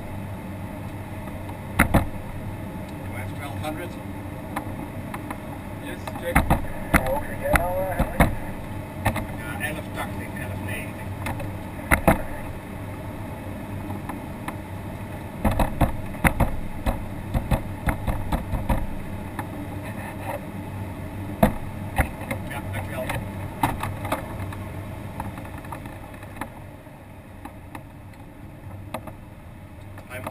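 Cockpit noise of an ASK-21 glider on aerotow: steady airflow rushing past the canopy with the tow plane's engine running faintly ahead, and frequent sharp clicks and knocks from the airframe. The noise drops somewhat over the last few seconds.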